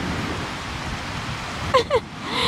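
A steady rushing noise spread evenly across high and low pitches, with a person's voice briefly near the end.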